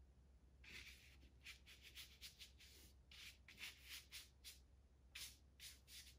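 Paintbrush swishing across paper in a run of short, faint strokes as paint is laid on, starting under a second in.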